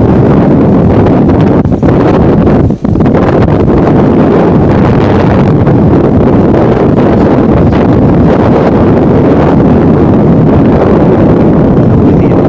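Wind buffeting the camera microphone: a loud, steady low rumble with one brief drop about three seconds in.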